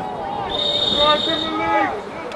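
A referee's whistle blows one steady high note for about a second, over voices on the field and sideline.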